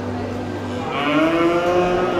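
A young cow gives one long moo starting about a second in, its pitch rising slightly, over a steady low hum.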